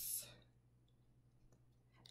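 Near silence: room tone after a woman's voice trails off at the start, with a faint click or two.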